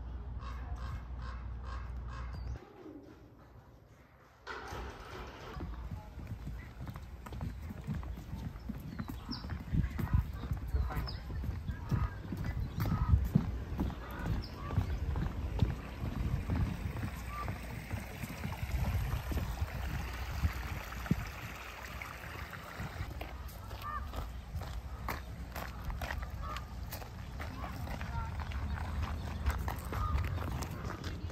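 Footsteps walking along a wooden boardwalk and a dirt path, an irregular run of soft thumps, with rustle from a hand-held camera. The sound drops out briefly a few seconds in.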